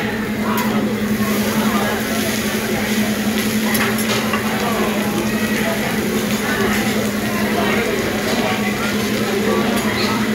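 Eggs sizzling on a hibachi flat-top griddle, with a couple of sharp metal clinks from the chef's spatula, over restaurant chatter and a steady low hum.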